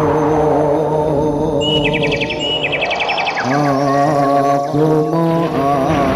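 Live jaranan dance music: a held, drawn-out melody over a steady accompaniment. About two seconds in, a rapid high trilling chirp sounds for about a second and a half.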